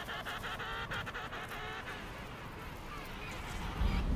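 Emperor penguins calling: rapid pulsing calls with several harmonics, strongest in the first second and a half, then fading to fainter calls.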